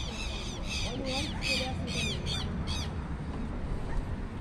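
A bird outside giving a rapid series of short, high calls, about three a second, that stop about three seconds in.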